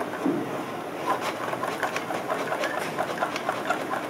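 Homemade lung-powered reciprocating air engine running: the ball piston in its plastic fluorescent-light-cover cylinder and the pencil crank rod clatter in a quick rhythm, about three or four clicks a second, as breath is pushed and drawn through the mouthpiece.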